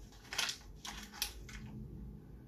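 A person chewing and biting a piece of printed paper in their mouth: several short papery crunches in the first second and a half, then it goes quiet.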